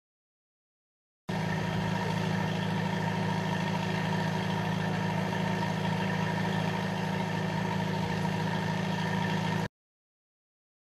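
A loud, steady low mechanical hum that never changes in pitch. It cuts in abruptly about a second in and cuts off abruptly shortly before the end.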